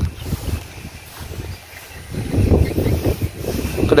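Wind buffeting the microphone: an uneven low rumble that swells and fades, loudest about two and a half to three and a half seconds in.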